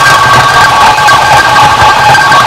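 Experimental noise music: a loud, dense wall of noise with three steady high tones held over it and a low rumble underneath.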